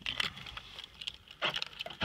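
Car keys jingling and clicking in a few short, light bursts, with a louder cluster about one and a half seconds in, as the ignition key is readied just before starting the engine.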